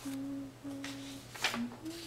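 A person humming a slow tune with closed lips: two held notes at the same pitch, then a short lower note and a higher one. A single sharp click sounds about a second and a half in.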